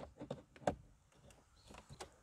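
A few faint, short plastic clicks as an OBD2 scan-tool connector is pushed into its port under the dashboard, the sharpest about two-thirds of a second in.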